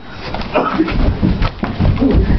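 Scuffling of a play-fight in a small room: irregular thuds, bumps and rustling of bodies and clothing, getting heavier about a second in, with the camera itself being knocked about.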